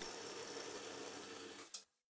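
Milling machine running with an end mill making a light cut in a steam chest casting: a faint, steady hum that fades out near the end.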